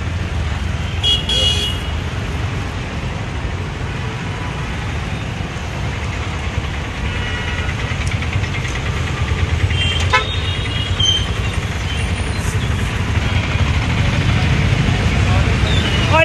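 Steady road-traffic rumble with a few short vehicle horn toots, about a second in and again around ten to twelve seconds. A curved blade hacks at a coconut husk in a few sharp knocks.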